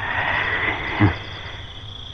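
Film sound effects of a jungle at night: frogs croaking over a steady high insect drone, with a held eerie tone and one short low croak about a second in.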